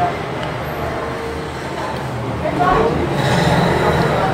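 Two people talking at a table over a steady low background rumble, a little louder in the last second or so.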